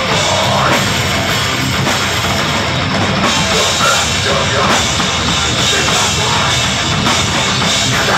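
Metalcore band playing live: distorted electric guitars, bass guitar and a drum kit played together, loud and without a break.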